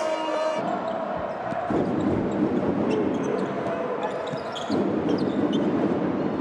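Basketball game sound in an arena: a continuous crowd din with a basketball bouncing on the hardwood court.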